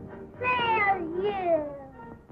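A small boy crying: two wailing cries, each falling in pitch, the second a little longer.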